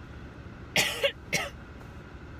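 A woman coughing twice in quick succession, about a second in, over the steady low road noise of the car cabin.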